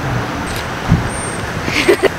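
Steady outdoor background noise of road traffic, with a soft low thump about a second in and a brief muffled vocal sound near the end.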